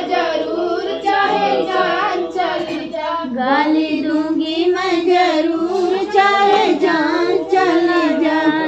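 Women's voices singing a traditional village wedding folk song together, in a continuous, wavering melodic line.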